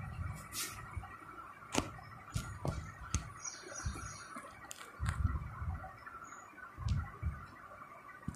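Writing by hand: scattered light taps and clicks, a brief squeak about three seconds in, and a few low thumps, over faint room hum.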